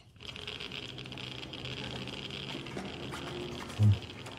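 Radiation dosimeters (Geiger counters) crackling in a dense, fast, steady run, the sign of very high radiation. Under them runs a low droning music score, and a brief low sound comes near the end.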